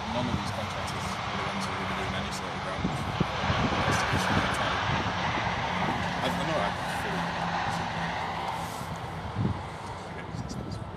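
Indistinct voices over a distant engine drone that swells in the middle and then fades.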